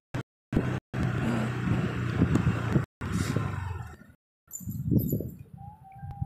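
Low rumbling vehicle noise at slow speed, cut by several brief dropouts to total silence. It dies away around four seconds in and comes back more unevenly, with a few sharp jolts.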